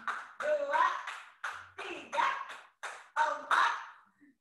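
A woman calling out short rhythmic phrases while clapping her hands, a sharp clap at the start of most phrases, about one to two a second.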